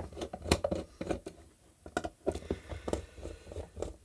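A screwdriver working the screws of a small plastic LED floodlight's back cover, making irregular light clicks and scratches as the casing is handled.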